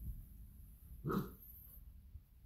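A Saint Bernard–poodle mix dog gives one short bark about a second in.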